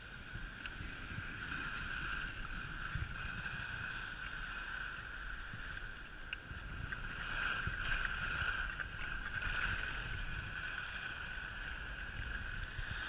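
Skis sliding and carving over groomed snow at speed, a continuous scraping rush with wind buffeting the action camera's microphone. The rush swells louder through two turns about two-thirds of the way through.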